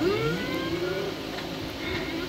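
Film soundtrack playing from a TV, heard through the room: one pitched, voice-like tone slides up, holds for about a second, then fades out over a low steady hum.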